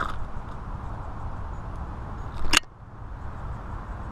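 Handling noise while a freshly caught bass is unhooked over the boat: a steady low rumble with a light click at the start and one sharp knock about two and a half seconds in.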